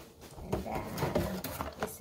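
Rummaging inside a cardboard shipping box: cardboard rubbing and scraping, with a few short knocks, as a small boxed package is lifted out.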